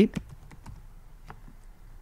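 A few scattered, faint computer keyboard keystrokes: separate light clicks as a word is typed.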